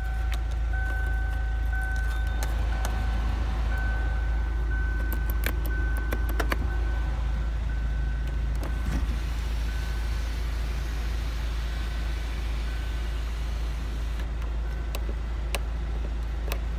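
Kia Sportage CRDi four-cylinder diesel idling, heard from inside the cabin as a steady low rumble, with a few sharp switch clicks. In the second half the electric sunroof motor runs for several seconds, adding a hiss that stops a couple of seconds before the end.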